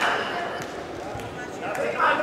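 Wrestlers moving on a padded wrestling mat: a few dull thuds of feet and hands, under faint voices echoing in a large hall.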